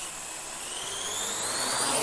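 Whoosh transition sound effect like a jet flying past: a rushing noise that grows steadily louder, with a faint whistling pitch rising through it.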